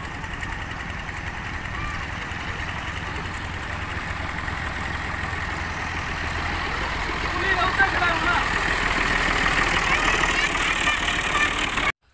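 Al-Ghazi 480 tractor's diesel engine running with a steady low rumble as it drives closer, growing louder through the second half. Short high chirps sound over it in the second half.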